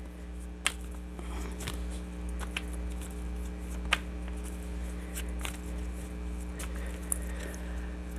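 An old tarot deck shuffled by hand: soft slipping and rustling of the cards, with a few sharp clicks as they catch and knock, over a steady low hum. The cards are worn and no longer slide well.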